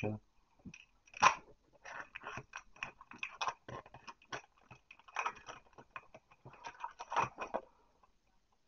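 Irregular light clicks and rustles from trading cards being handled, coming in small clusters, thickest about five and seven seconds in.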